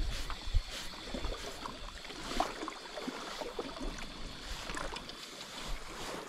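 A steady wash of sea water and wind with scattered small clicks and ticks, while a hooked squid is reeled in on a spinning rod and reel.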